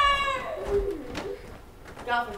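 A voice holding a note that falls in pitch and fades in the first half second, then a short low hum about a second in. Quieter after that.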